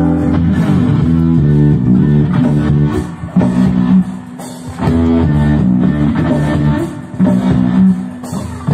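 Instrumental break of a rock song: guitar over bass and drums, with no singing.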